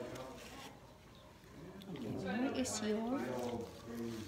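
A person's voice speaking with rising and falling pitch, after a quieter moment about a second in.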